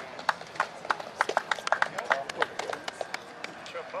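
A rapid, irregular run of sharp clicks, several a second and thickest through the middle, over low background voices.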